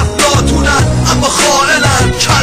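Hip-hop track: a man rapping in Persian over a beat with deep bass.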